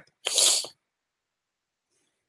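A man's short, sharp burst of breath lasting about half a second, a quarter second in, hissy rather than voiced, like a stifled sneeze.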